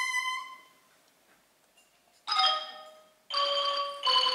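Pi nai (Thai quadruple-reed oboe) holding its last note, which dies away within the first second. After a short silence, a ranat ek (Thai wooden xylophone) strikes a ringing note a little past halfway, then starts a sustained tremolo roll near the end, opening its solo.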